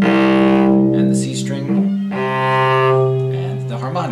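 Cello bowed on its C string: the open string is sounded, then a lightly touched halfway point gives its first harmonic, a C one octave above. Two sustained notes are heard, the second starting about two seconds in.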